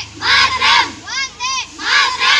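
A group of children shouting a slogan in unison: a loud, rhythmic chant of short syllables, repeated in regular beats.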